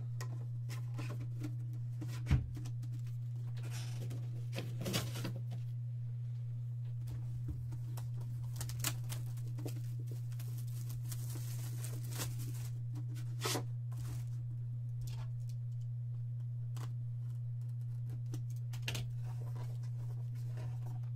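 Plastic shrink wrap being torn and crinkled off a cardboard trading-card box, with scattered handling clicks and a single thump about two seconds in, over a steady low electrical hum.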